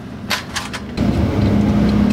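A few light metal clinks, then from about a second in a cordless impact wrench's motor spins steadily and loudly, running the exhaust mounting nuts onto their studs.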